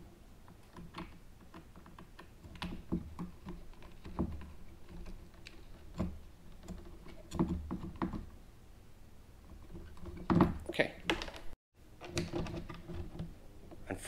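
Scattered small clicks and taps of a coated wire rudder cable and fingers working against a kayak's plastic deck cover plate, with a short run of louder knocks about ten seconds in.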